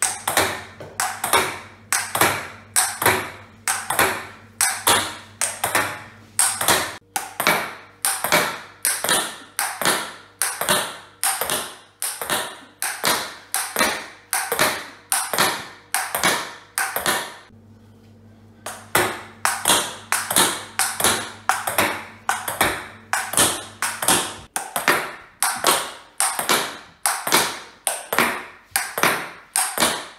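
Table tennis ball in a fast solo rally against a thin MDF rebound board: sharp knocks from bat hits, table bounces and board rebounds, about two to three a second. The knocks break off for about a second just past the middle, then resume.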